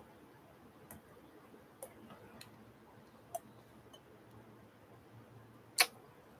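A few faint, scattered clicks, about five in six seconds, with the sharpest one just before the end, over quiet room tone.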